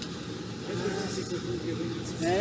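Steady low hum of the blower fans that keep an inflated air-supported sports dome up, heard as a constant rumble under the dome's roof. A voice sounds briefly about a second in.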